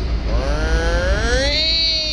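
A man's voice imitating a fishing reel's clicker screaming as line runs off: one drawn-out whine that starts a moment in and rises in pitch, then holds. It is the sound that signals a sailfish has turned the bait in its mouth and sped off to swallow it.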